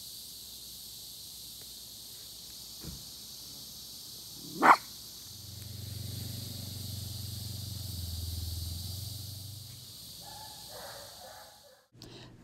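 A miniature schnauzer barks once, short and sharp, a little under five seconds in, over a steady high hiss. A low rumble follows for several seconds after the bark.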